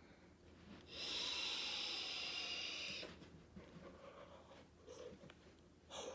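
A long draw on a vape, heard as a steady hiss for about two seconds, then fainter breathing as the vapour is let out.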